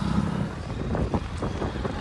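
Motorcycle engine running while riding along a road, with wind rushing and buffeting over the microphone.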